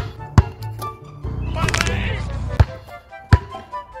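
Basketball bouncing on asphalt: four sharp thuds, two close together at the start and two more near the end, over background music with a steady beat. In the middle, a loud noisy rush lasting about a second.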